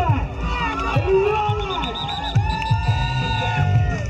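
Crowd of spectators shouting and cheering, with many voices overlapping.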